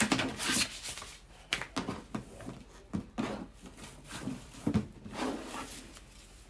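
Ribbon being untied and pulled off a cardboard gift box, with irregular rustling, scraping and light knocks as the box is handled.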